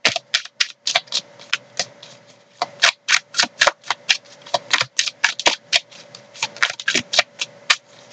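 A deck of tarot cards being shuffled by hand: a quick, irregular run of sharp card clicks and slaps, several a second.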